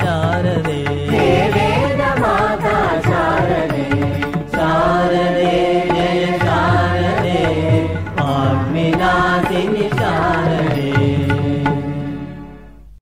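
A Hindu devotional bhajan to the goddess: a sung melody over a steady low instrumental drone. It begins to fade out just before the end.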